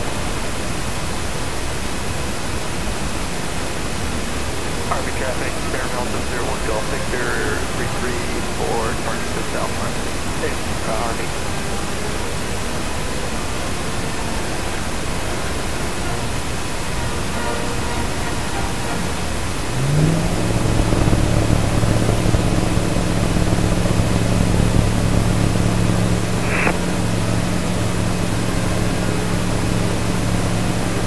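Zenith CH701 light aircraft's engine and propeller heard from the cockpit, a steady drone at low power; about two-thirds of the way through the engine is throttled up to full power, with a quick rise in pitch into a louder, steady hum for a short takeoff roll.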